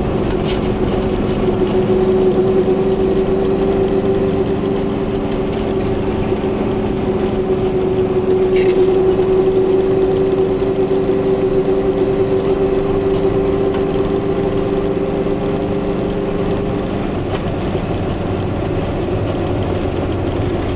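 Goggomobil's air-cooled two-stroke twin engine running at a steady cruise, heard from inside the small car's cabin together with road noise. The steady engine note drops away about three seconds before the end.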